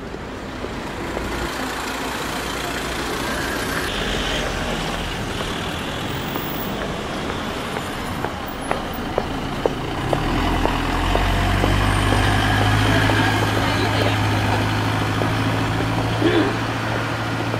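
A motor vehicle running, with steady road and engine noise. A low engine hum grows louder about ten seconds in, and a few sharp clicks come just before it.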